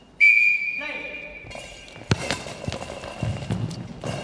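A referee's whistle blows one long steady blast, the signal for play in goalball. It is followed by the hard rubber goalball with bells inside being thrown: thuds and a jingling rattle across the hall floor.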